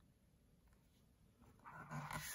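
Near silence, with a faint soft rustle near the end as a hand takes hold of a board-book page to turn it.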